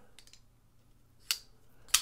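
Petrified Fish PF949 flipper knife being handled with its liner lock: a few faint clicks, then a sharp metallic click a little past halfway and another near the end as the lock is released and the blade swings closed.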